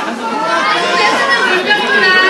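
A crowd of fans calling out and talking over one another, many voices overlapping at once.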